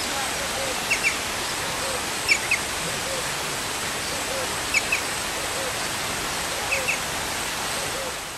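Steady rush of water running over rocks, with short high animal chirps that come in quick pairs every second or two.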